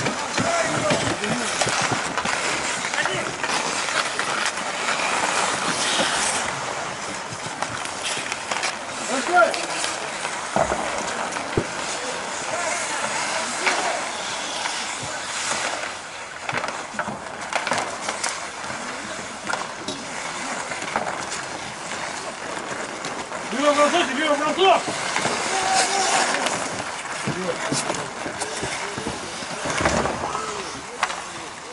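Sounds of an outdoor ice hockey game: a steady scraping of skates on the ice, now and then a sharp clack of stick or puck, and players' shouts that come loudest about 24 seconds in.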